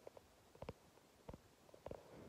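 Near silence broken by a few faint, soft thumps, from a phone being carried by someone walking.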